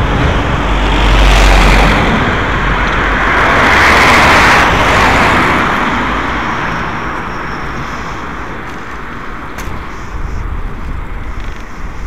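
Road traffic going past close by: two swells of passing-vehicle noise, about a second and about four seconds in, then a lower, steady road and wind hiss.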